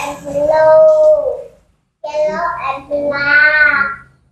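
A young child's voice singing two long, drawn-out phrases with held notes that glide up and down in pitch, separated by a short silence.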